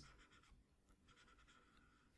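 Near silence, with faint scratching of a pen stylus moving over a drawing tablet as a curve is traced.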